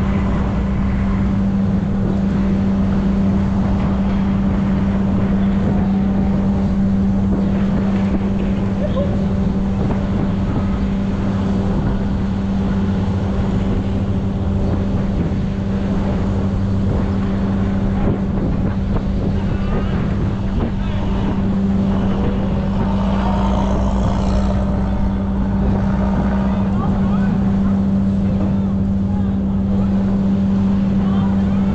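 An engine running steadily at one unchanging speed, a constant low drone that holds for the whole stretch. Some brief rising and falling whines come in about three quarters of the way through.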